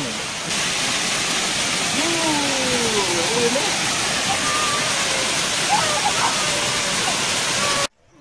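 Waterfall: water cascading down rock ledges, a steady rush, with faint voices over it in the middle. It cuts off abruptly just before the end.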